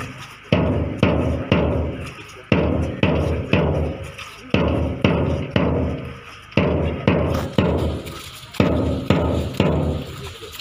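Bass drum beating a steady march time for marchers, about two strikes a second, each ringing on, with a brief pause every few beats.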